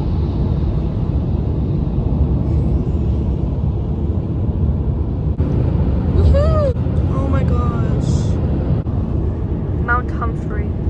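Steady low road and engine rumble inside a moving car's cabin, with a short bit of a person's voice about six seconds in.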